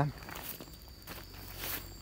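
Faint handling noise: soft steps and rustling as a plastic tarp is lifted and woven fertilizer sacks are moved, a little louder near the end.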